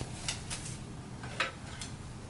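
A few light clicks and rustles of a bamboo-ribbed dance fan being handled and picked up from a table. The loudest click comes about one and a half seconds in.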